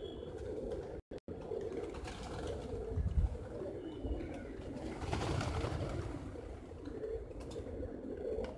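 A large flock of feral rock pigeons cooing together steadily, with a rush of flapping wings about five seconds in as some birds take off. The sound drops out for a moment about a second in.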